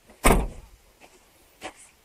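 A single loud thump about a quarter of a second in, followed by two faint clicks.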